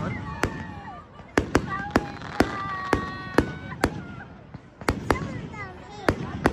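Aerial fireworks bursting: about a dozen sharp cracks and bangs at irregular intervals, some close together in quick pairs.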